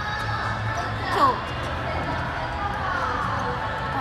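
A pen writing and lightly knocking on a desk as a message is written. This sits under a woman's soft speech, with background music and a low steady hum.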